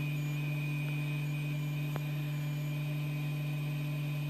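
Steady electrical hum of a powered-up CHMT36VA desktop pick-and-place machine at rest, with one faint tick about halfway through.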